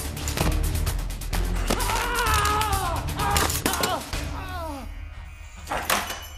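Action film score with a fast, even percussive pulse, over which a cat yowls in several drawn-out cries that rise and fall, about two to four seconds in.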